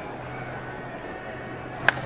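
Low, steady ballpark background noise with a faint hum, then just before the end a single sharp crack of a baseball bat hitting the ball on a home-run swing.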